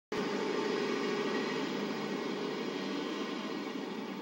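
Steady background noise with a faint hum, unchanging throughout.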